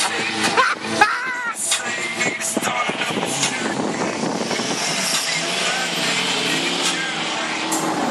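Steady rush of wind and road noise past a phone held out of a moving car's open window, with a voice calling out about a second in.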